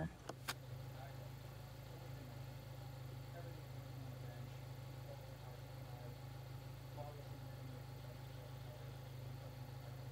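Mazda MX-5's engine idling steadily in a low, even hum, with one sharp click about half a second in.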